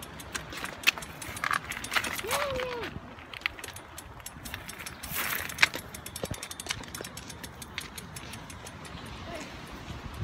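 Irregular clicks, knocks and rattles of a bicycle being handled and ridden, with a handheld phone rubbing and bumping close to the microphone. A brief voiced sound rises and falls about two and a half seconds in.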